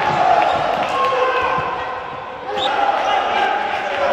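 Futsal ball being kicked and bouncing on a sports-hall court, in short knocks under a steady din of crowd voices and shouting in the hall. A short rising squeak cuts in a little after the middle.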